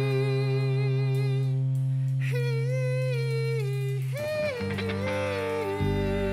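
A rock band playing live: a held, wordless sung melody with vibrato over a steady bass and keyboard bed, stepping up in pitch twice. The low notes shift just before the end.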